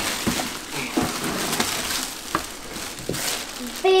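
Clear plastic bag crinkling as it is pulled off a small aquarium tank, with a few light knocks of the tank in between.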